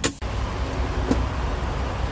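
Steady low rumble of an idling semi truck's diesel engine, with a sharp click right at the start.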